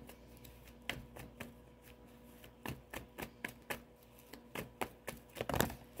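Tarot cards being shuffled by hand: a string of irregular light clicks and snaps of the cards.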